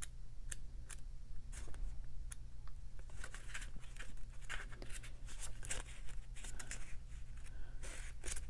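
Pages of a small paperback guidebook being leafed through by hand: a string of quick, soft paper flicks and rustles as the pages are turned in search of an entry.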